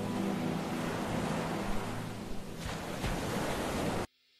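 A steady rushing noise like ocean surf, with the fading tones of soft background music beneath it; it cuts off suddenly at the end.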